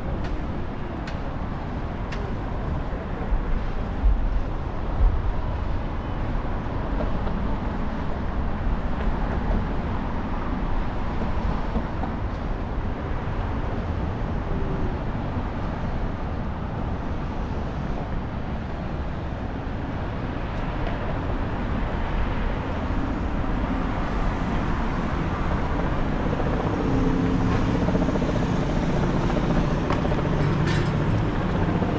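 City street traffic: a steady rumble of passing cars, with two low thumps about four and five seconds in and a vehicle engine's hum growing louder in the last few seconds.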